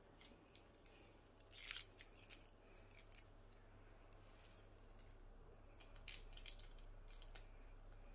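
Faint small metal clicks and rattles from a spring toggle bolt being handled in the fingers, its folding wings and screw knocking together, with one brief louder scrape just under two seconds in.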